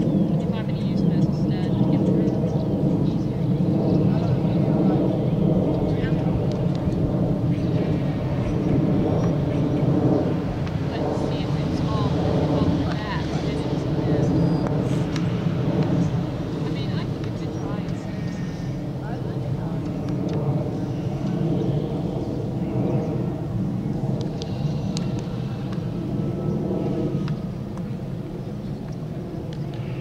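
A steady, low droning hum made of several even pitched tones, like an engine running; it drops slightly near the end.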